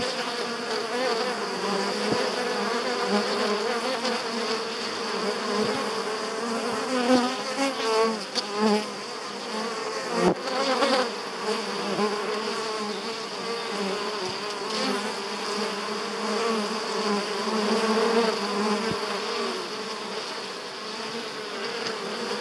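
Honeybees buzzing in flight at the hive entrance: a continuous, many-voiced drone whose pitch wavers, swelling briefly several times as single bees fly close past.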